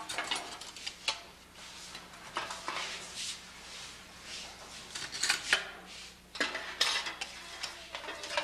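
Irregular light clinks and clatters of hard objects being handled, some in quick clusters, over a steady low hum.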